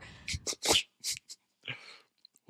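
A man laughing: a run of short breathy bursts, mostly air rather than voice, about half a dozen over the two seconds.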